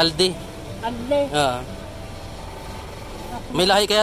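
Conversational speech in short bursts, over a steady background hum of street traffic.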